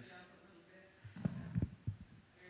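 Microphone handling noise as a lectern's gooseneck microphone is moved closer: a short cluster of low thumps and bumps a little over a second in, after a faint hum.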